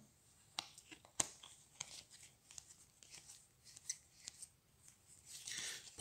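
Playing cards being rearranged in the hand: a few faint clicks and flicks of card stock sliding against each other.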